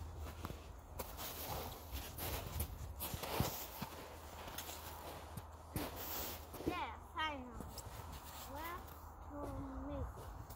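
Footsteps and scuffing in snow, with short knocks scattered through. A voice makes a few brief, gliding sounds in the second half.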